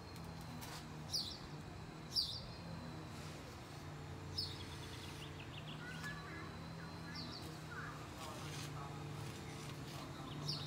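A bird calling outdoors: short, high, sharp chirps repeated every one to three seconds, with some fainter chirping in between, over a steady low hum.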